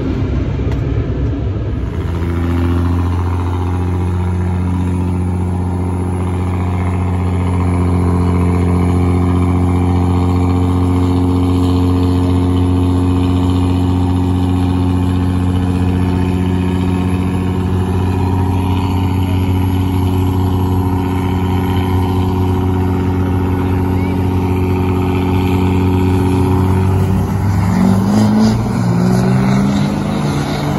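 Diesel pickup trucks at a drag strip start line, a Duramax against a third-gen Cummins: engines running in a loud, steady drone that holds one pitch. Near the end the pitch bends and rises as the trucks rev and launch down the quarter mile.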